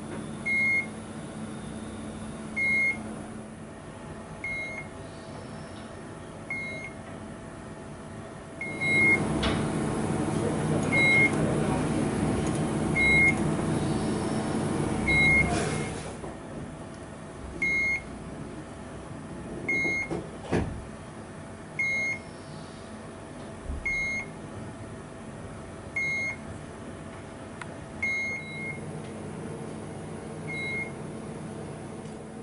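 A short electronic beep repeating about every two seconds over a steady machine hum. From about nine to sixteen seconds in, a louder rushing noise rises over it.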